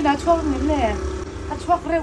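People talking over a low, steady rumble of street traffic.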